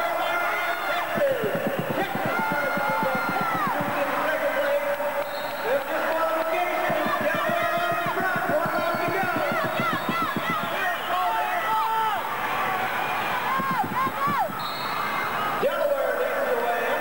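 Original sound of an indoor inline skating race on a wooden floor: crowd voices and shouts in the hall, with many short high squeals that bend and drop in pitch, typical of skate wheels gripping the floor in the corners, over a patter of low knocks.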